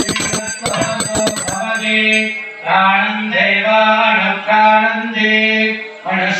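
Brass puja hand bell rung rapidly for about the first second and a half, then a man chanting a mantra on a steady held pitch.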